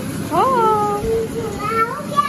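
A young boy wailing in long, wordless cries. Each cry slides up in pitch and then falls away, with a second rising cry near the end.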